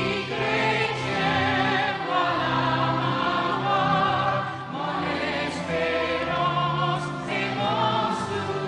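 A group of voices singing a hymn together in harmony, with long held notes and vibrato.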